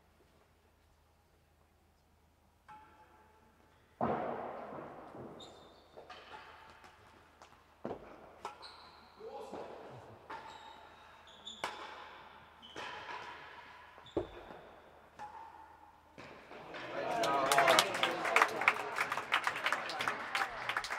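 Real tennis rally in a large echoing indoor court. The solid ball is struck by rackets and thuds off the walls and floor after a quiet start. About three-quarters of the way through, applause breaks out as the game point rally ends.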